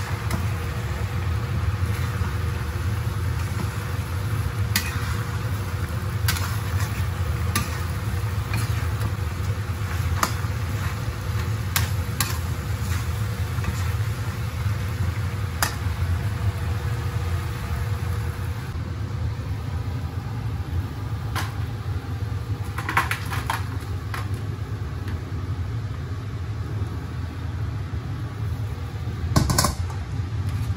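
Chicken and green peppers stir-frying in a wok, with faint sizzling over a steady low hum, and a metal spatula scraping and clicking against the wok now and then. Just before the end comes a louder clatter of metal as the food is scooped out into a steel tray.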